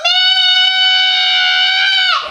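A girl's long, high-pitched scream held on one steady pitch, bending down and breaking off at the end.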